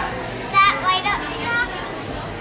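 A child's high-pitched, wordless silly vocalizing: a few short, wavering squeals starting about half a second in and another short one near the end, over the chatter of a busy dining room.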